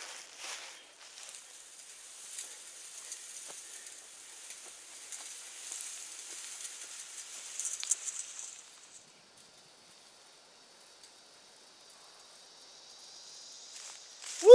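Piece of chain-link fencing dragged by hand across loose, sandy soil: a steady scraping rustle with a few small clicks, burying the seed and fertilizer. It cuts off abruptly about nine seconds in, followed by near silence.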